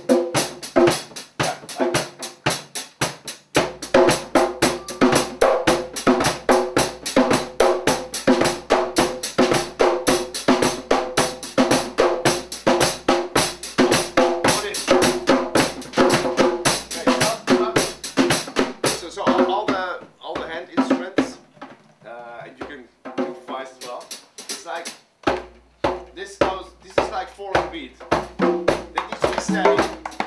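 A percussion ensemble plays a steady groove together on drum kit, hand drums (congas, bongos, djembes) and tambourine. Deep low beats join a few seconds in, the playing thins out for a few seconds past the middle, and it fills out again with the low beats near the end.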